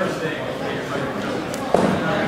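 Indistinct chatter of onlookers echoing in a large gym hall, with one sudden loud thump near the end.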